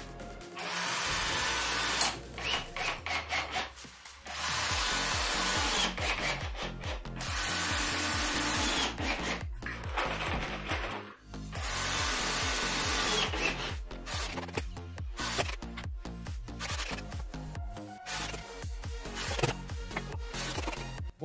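Cordless drill-driver driving drywall screws through high-density plasterboard into the wooden ceiling framing, in several runs of one to two seconds each, with background music underneath.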